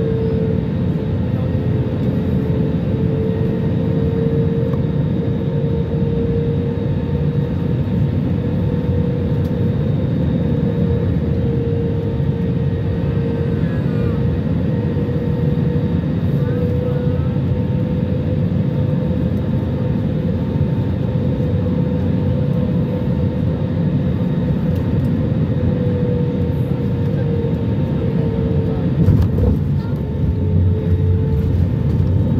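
Jet airliner cabin noise on final approach: a steady rumble of engines and airflow with a steady whine that wavers slightly in pitch. Near the end there is a single jolt as the main wheels touch down on the runway, followed by heavier rumbling.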